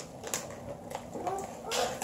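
Paper padded mailer envelope rustling as it is handled, then a rising noisy tear as it is pulled open near the end.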